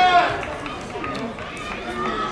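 Men shouting in celebration of a goal, with one loud held shout right at the start, then scattered calls and voices.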